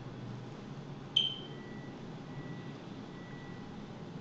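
A single short, high electronic beep about a second in, dying away quickly, followed by a faint thin tone on and off for a couple of seconds over low room noise.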